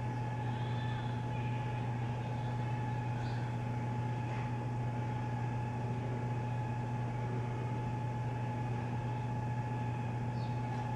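A steady low mechanical hum with a fainter, higher steady tone above it, unchanging throughout.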